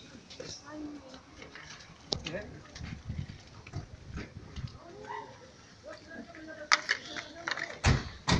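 Faint, distant voices from across a street, with a few sharp knocks near the end.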